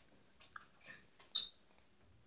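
A few faint, short clicks and squeaks, about five in all, the last and loudest about one and a half seconds in. These are mouth and cup sounds of someone drinking from a small paper cup.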